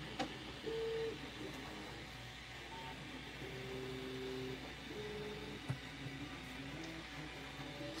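Quiet room with faint background music: a few soft held notes. A light click comes just after the start and another a little before six seconds.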